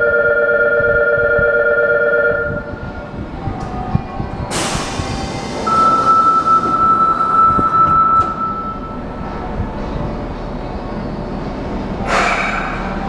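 Subway platform door signals: a steady two-note electronic warning tone for about two and a half seconds, then a sharp burst of hissing air about four and a half seconds in, then a single steady high tone for about three seconds while the platform doors close, over low rumbling platform noise.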